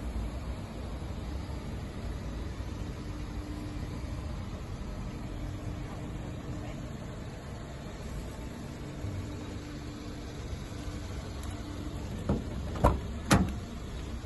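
Steady low background rumble, then near the end a few sharp clicks and a knock as a Peugeot 108's door handle is pulled and the door is opened.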